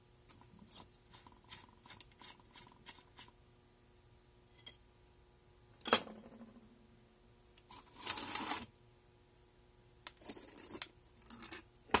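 Light handling noises at a workbench: a run of small clicks, then a single sharp knock about halfway through, and two short scraping or rustling sounds of about a second each later on, with more clicks near the end.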